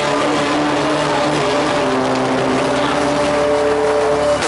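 Live rock band playing loud, with distorted electric guitars holding long, sustained notes that change pitch every second or so over a thick, steady low hum.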